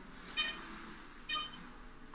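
Patient monitor beeping with the heartbeat: short, high electronic beeps about once a second, twice here.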